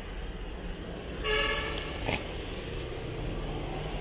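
A vehicle horn sounds once, a steady toot of just under a second, about a second in, over a steady low background rumble.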